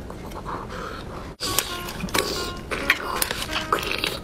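Background music throughout, with a brief dropout about a third of the way in. After it come many short clicks and wet rustles of a roast chicken being torn apart by hand.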